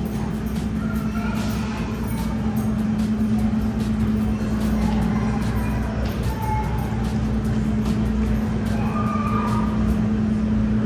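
A steady low hum holding one constant pitch over a low rumble, with faint distant voices now and then.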